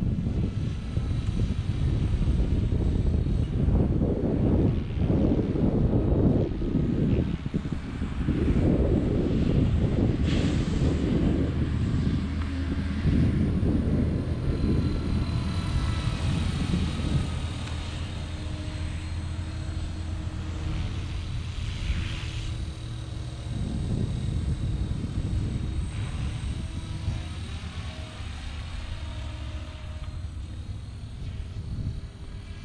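Stretched Blade Fusion 480 (550-size) electric RC helicopter flying at a distance. Its motor and rotor give a thin whine that drifts in pitch as it moves. Gusty wind buffets the microphone, heaviest in the first half.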